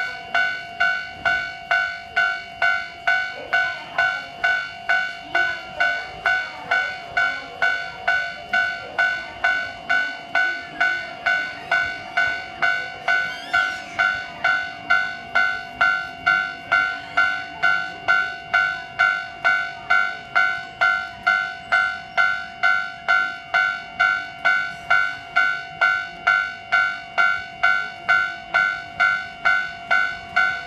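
Japanese railway level-crossing warning bell ringing steadily, about two strikes a second, each strike a bright ringing tone. The crossing is closed for a passing train.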